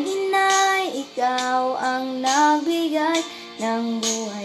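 A young girl singing a Tagalog song, holding long notes that step up and down in pitch between short breaths.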